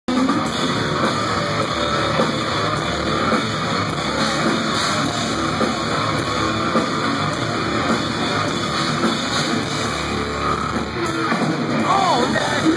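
Heavy metal band playing live at a steady loud level, with distorted electric guitar out front and drums behind.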